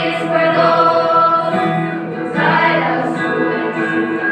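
A mixed choir of teenage boys and girls singing a song together in held notes, with guitar accompaniment. A new phrase begins about two and a half seconds in.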